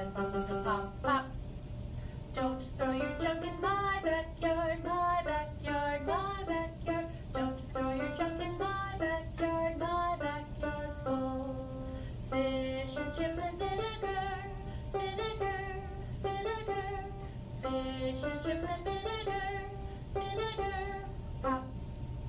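A woman singing a short vocal warm-up phrase, repeated about four times with brief breaths between, over a steady low hum.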